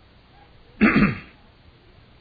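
A single short cough about a second in.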